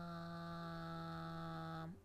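A steady humming tone held at one unchanging pitch with a rich set of overtones, cutting off suddenly just before the end.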